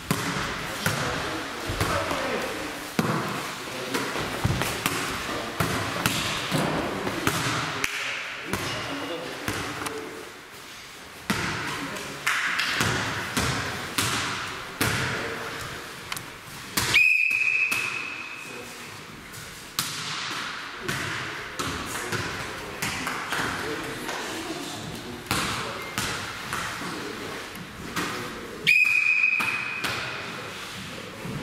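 Volleyball play in a gym: the ball is struck by hands and bounces on the floor in repeated knocks, under a murmur of voices in the hall. A sports whistle blows two short blasts, one about seventeen seconds in and one near the end, and these are the loudest sounds.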